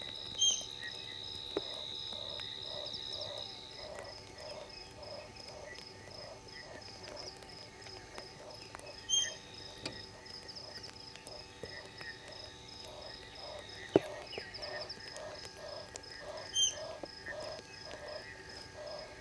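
Night chorus of frogs and insects: a frog calls in a steady series of short notes about twice a second over a high, steady insect trill. A few short, sharp high calls cut in three times.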